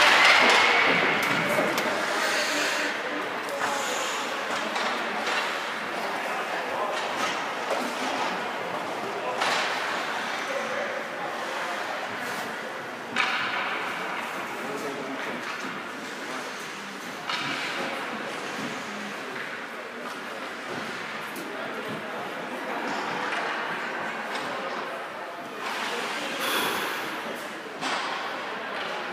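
Ice rink ambience in a large echoing arena: indistinct spectators' and players' voices, with a few sharp knocks, the clearest about 13 and 17 seconds in.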